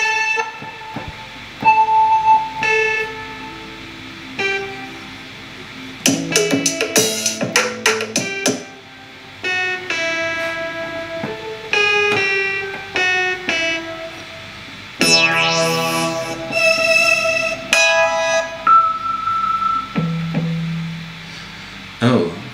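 Presets of Logic Pro's Alchemy software synthesizer auditioned one after another from a MIDI keyboard: short bursts of synth notes and patterns, each in a different tone, with gaps between them. A quick run of notes comes about a third of the way in, a rising sweep about two-thirds through, and a low bass note near the end.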